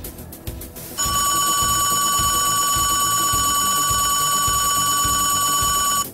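Background film music with a regular low beat. About a second in, a loud, steady, high electronic tone with overtones comes in over it, holds for about five seconds, then cuts off suddenly.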